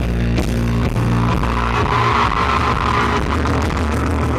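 Live pop-rock band playing an instrumental passage between vocal lines, with held bass notes under guitar chords and a regular drum beat.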